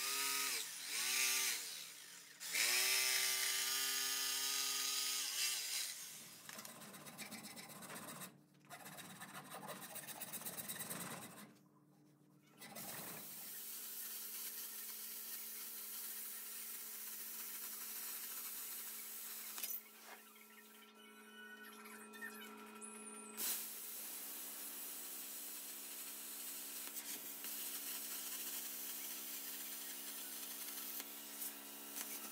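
Electric jigsaw cutting wood in short runs, its motor whine rising at each start and falling as it stops. About halfway through an angle grinder takes over, running steadily as it grinds steel.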